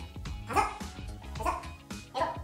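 Background music with two short voice sounds about a second apart, in time with bodyweight squat repetitions.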